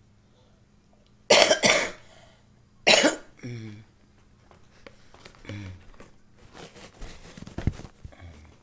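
A woman coughing: two loud coughs in quick succession about a second and a half in, another about three seconds in with a short voiced tail, then quieter throat noises.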